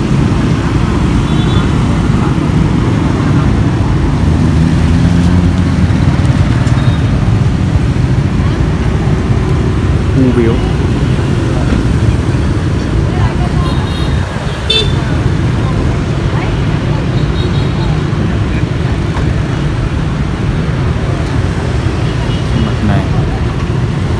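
Steady low rumble of street traffic from motorbikes and cars, with a few short horn toots scattered through it.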